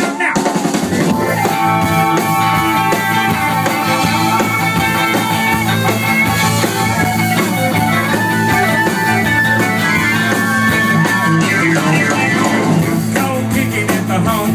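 Live country-rock band playing the instrumental intro of a song: drum kit, electric guitar and a Roland stage piano, loud and steady with a driving beat.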